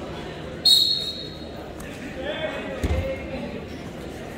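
A referee's whistle gives one short, loud blast to start the wrestling from the referee's position. Voices shout after it, and there is a low thud about three seconds in.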